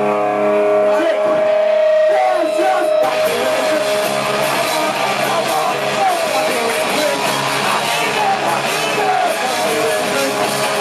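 Live rock band with electric guitars: a held guitar sound rings for the first three seconds, then drums and the full band come in about three seconds in and play on loudly.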